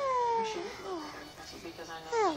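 A single drawn-out meow, falling in pitch, over the first half second or so.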